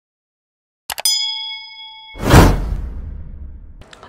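Subscribe-button sound effects: a couple of quick mouse clicks, then a notification-bell ding that rings for about a second, followed by a loud whoosh that fades out.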